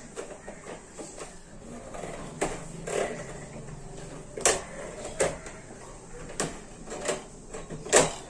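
Steel wire guard of a wall fan clicking and rattling as the front and rear grilles are pressed together by hand. Sharp clicks come about once a second, the loudest about halfway through and at the very end.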